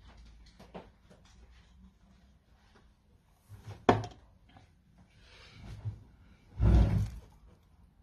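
Handling knocks: a sharp knock about four seconds in, then a louder, longer thump with rustling near seven seconds, with faint rustling between.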